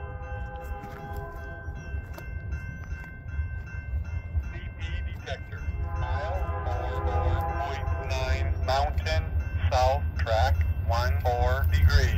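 A Rocky Mountaineer train led by EMD GP40-2LW diesel locomotives approaches, its low rumble growing steadily louder. A held multi-note chord, typical of a locomotive horn, sounds at times. Sweeping, warbling tones come and go over it in the second half.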